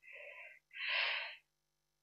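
A man breathing close to a microphone: a faint short breath, then a louder, longer breath about a second in, with a faint steady hum underneath.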